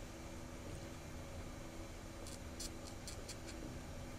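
A small handheld object scraped against a gramophone record on a turntable, played through an amplifier: a steady low hum and hiss, with a quick run of about seven sharp scratchy clicks a little past two seconds in.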